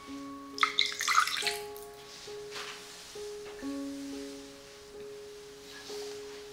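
Soft instrumental music of gently held, changing notes. About half a second in, liquid pours and splashes into a glass bowl for under a second.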